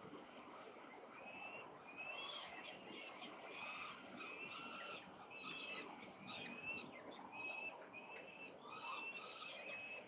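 Peregrine falcon fledglings giving a series of short, high, begging calls, about one a second, louder from about two seconds in, while they are fed at the nest ledge.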